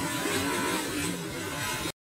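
A metal roll-up shutter door rolling down to close, a steady noisy rumble that cuts off abruptly near the end.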